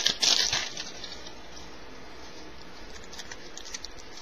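Crinkling of a trading-card pack wrapper being handled in the first second, then quiet with a few faint light ticks near the end.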